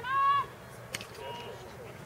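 A short, high-pitched shout from someone on or beside the lacrosse field at the very start, then a single sharp click about a second in, likely a stick or ball knock, over the faint open-air noise of the game.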